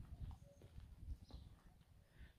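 Near silence outdoors: a faint low rumble with a few soft, scattered taps.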